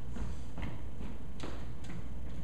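Footsteps of a person walking across a stage floor, four or so separate steps, with a steady low hum underneath.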